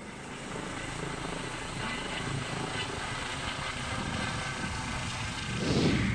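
Trauma helicopter running, a steady rotor and engine noise that swells louder near the end.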